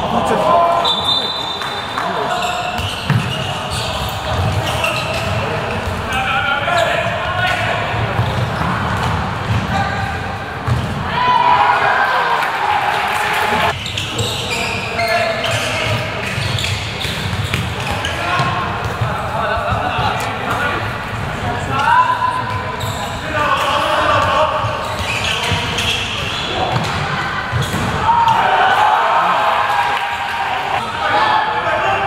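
Handball bouncing and thudding on a sports-hall court during play, with players' and spectators' shouts and calls, in a large hall.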